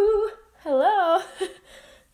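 A woman's voice: the drawn-out end of a spoken word, then about half a second in a short sing-song hum whose pitch wobbles up and down.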